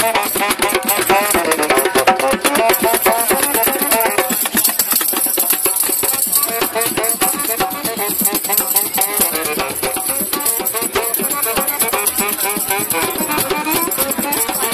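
Live saxophone playing a melody over a steady hand-percussion groove of cajón and hand drum, with rattling shaker or jingle sounds.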